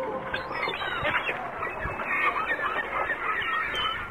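A flock of gulls calling, many short overlapping cries.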